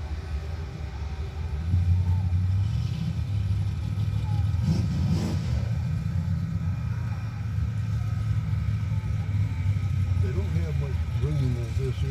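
Low, steady engine rumble heard from inside a vehicle's cabin, growing louder about two seconds in, with a brief louder noise around five seconds in.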